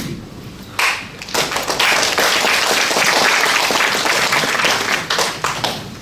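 Audience applauding: the clapping starts about a second in, swells, then fades away near the end.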